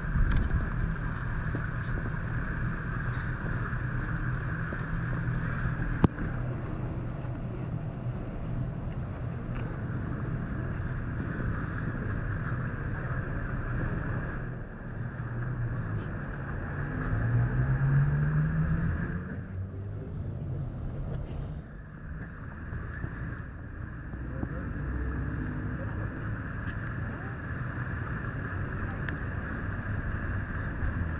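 Outdoor street traffic: a steady rumble and hiss. About two-thirds of the way in, a vehicle's engine rises in pitch as it gets louder. A single sharp click comes about six seconds in.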